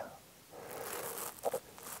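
A pause in the talk filled with a faint rustling noise, with a brief voice sound about one and a half seconds in.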